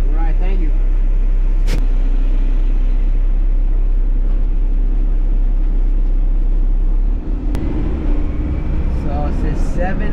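Garbage truck's diesel engine, heard from inside the cab: a steady low idle, which about seven seconds in gives way to a rising, uneven engine sound as the truck pulls away under load.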